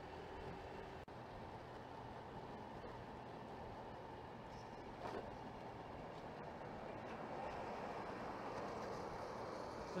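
Steady running noise of a Honda Vario 125 scooter being ridden along a wet road: engine hum mixed with tyre and wind noise. It grows a little louder near the end.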